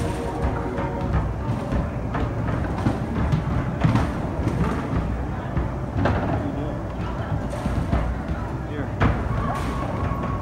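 Basketballs thudding irregularly against the backboards and rims of arcade basketball machines, over music and background voices.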